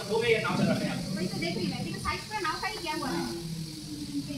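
People's voices talking and exclaiming, over a steady hiss.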